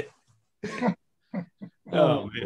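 Tail end of a group's laughter: three short, breathy bursts of laughing with gaps between them, then a voice starts to speak near the end.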